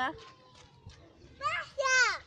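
Voices: a short spoken syllable at the start, then a child's high-pitched vocalising with gliding pitch twice, about one and a half seconds in and again near the end.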